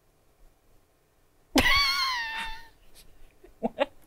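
A person's short, high-pitched vocal squeal, starting suddenly about a second and a half in and sliding slightly down in pitch over about a second, with a few faint short vocal sounds near the end.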